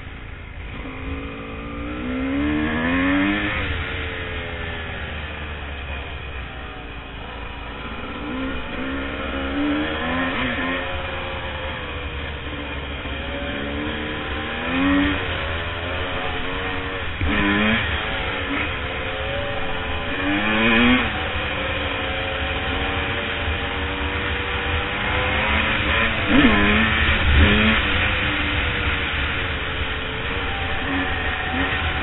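Dirt bike engine under way on a dirt trail, its pitch repeatedly climbing as the throttle opens and dropping back, as the rider accelerates and shifts gears, over a constant low rumble.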